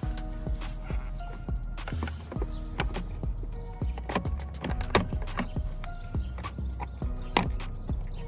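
Background music with sharp percussive hits and held notes.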